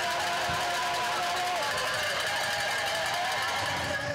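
Steady outdoor trackside ambience at a mountain bike race course: an even wash of noise with a faint, wavering held tone that drops in pitch partway through.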